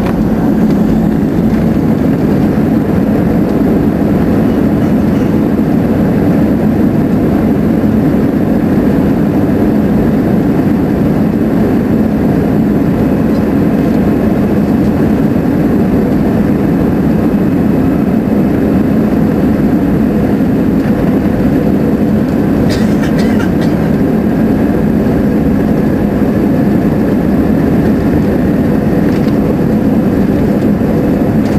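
Steady jet-engine and rolling noise inside an airliner cabin as the plane taxis, a constant low hum without spooling up. A few brief clicks come about two-thirds of the way through.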